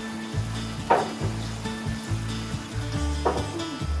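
Two short slurps of someone eating from a bowl of broth with chopsticks, about a second in and again past three seconds, over background music with a steady, repeating bass line.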